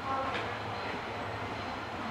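JR Shikoku 185 series diesel railcar approaching at a distance: a steady low hum under an even outdoor haze, with one short sharp sound about a third of a second in.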